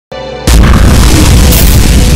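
Cinematic logo-intro sound effect: a faint tone, then about half a second in a sudden, very loud deep boom that carries on as a dense rumbling hit, with a brief swish near the end.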